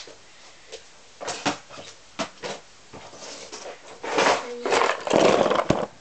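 Handling noise: a few light knocks, then loud close rustling and scraping about four seconds in, as a cardboard box is moved right up against the microphone.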